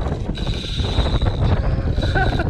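Wind buffeting the microphone, with the mechanical whir and ticking of a spinning reel working under a hooked fish. A steady high whine sets in shortly after the start.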